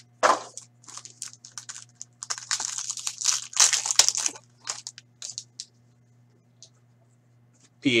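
A sealed hockey card pack's wrapper torn open by hand: a short rustle at first, then a long crinkling tear about two and a half seconds in that lasts nearly two seconds, followed by a few brief rustles as the cards come out. A faint steady low hum runs underneath.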